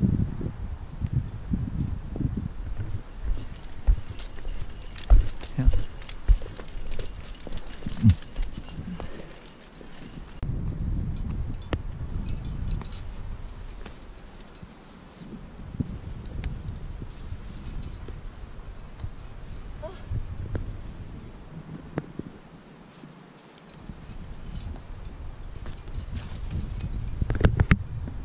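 Climbing gear (carabiners and other metal hardware on a harness) clinking and jangling as a climber moves over granite, with a few sharp knocks and scuffs on the rock, under a low rumble on the microphone.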